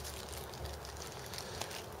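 Faint clicking and plastic rustling of small M5 steel screws and rail nuts being picked out of a plastic bag by hand, over a low steady hum.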